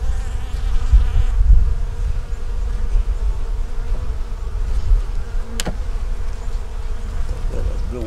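Honey bees buzzing around an open hive box, a steady hum, with a low gusty rumble of wind on the microphone. One sharp click sounds a little past halfway.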